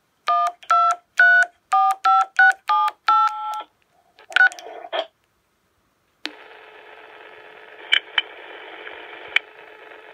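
Baofeng handheld radio sending DTMF keypad tones: eight short two-tone beeps in quick succession, the digits one through eight. After a brief pause, a steady radio hiss with a few sharp clicks comes on about six seconds in.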